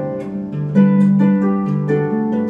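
Large concert harp played solo: low bass notes ringing under a plucked melody line, with a new bass note and chord struck about three-quarters of a second in.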